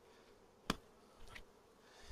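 Honeybees buzzing faintly around an open hive, with one sharp knock about 0.7 s in and a softer one a little later as bees are shaken off the queen excluder.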